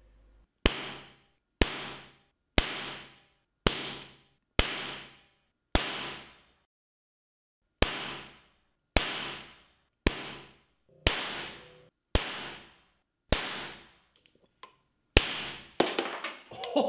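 Small 3D-printed metal rocket engine firing spark-ignited oxyhydrogen in pulses: loud detonations, one about every second, each a sharp bang with a short ringing decay. There are about fourteen bangs, with a longer pause near the middle and two small pops near the end.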